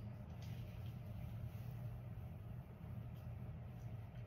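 A steady low hum, with a few faint soft rustles of a round brush drawn through hair.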